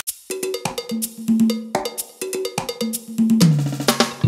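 Funk drum groove on an electronic drum kit: a syncopated pattern of sharp hits mixed with pitched, cowbell-like notes, leading into the full band.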